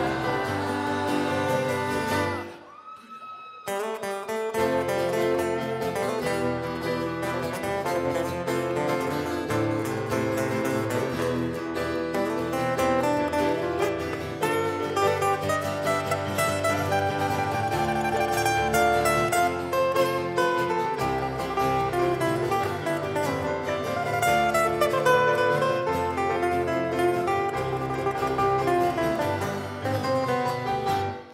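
Live acoustic band playing an instrumental break led by a fast plucked-string solo over bass and keyboard. The band drops almost to nothing for about two seconds, beginning about two and a half seconds in, then comes back in.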